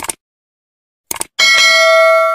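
Subscribe-animation sound effects: a short tap click, a second click about a second later, then a bright notification-bell chime that rings on, held and loud, as the bell icon is switched on.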